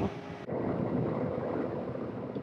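Wind on the microphone outdoors: a steady rushing noise that starts suddenly about half a second in.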